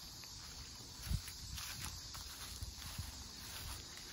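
Footsteps on grass and a few dull handling bumps on a handheld phone while walking, the loudest thud about a second in.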